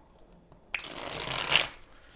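A deck of tarot cards being shuffled by hand: one rustling burst of about a second that starts suddenly partway in.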